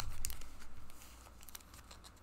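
Foil booster packs rustling and crinkling as they are picked up and handled: a run of small crackles, busiest in the first second and then thinning out.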